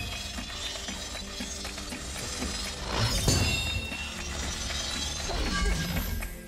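Film soundtrack from a lightsaber duel: orchestral score under lightsaber hum and clash effects, with a sharp metallic clash about three seconds in.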